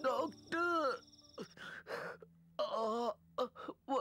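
A man moaning and groaning in pain: a series of short moans, each rising and then falling in pitch, with breaks between them.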